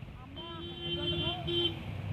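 Roadside traffic noise: a vehicle engine running with a rapid low throb, faint voices, and a steady held tone lasting about a second near the middle.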